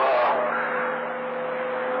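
CB radio receiving an AM skip signal on channel 28 during a pause in the distant operator's talk, with the carrier still on: static hiss with a steady whistle tone and a lower steady hum underneath.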